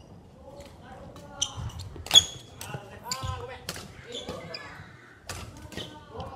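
Badminton rackets striking a shuttlecock during a rally: two sharp hits with a brief ringing tone about a second and a half and two seconds in, the second the loudest. Players' voices are heard around and after the hits.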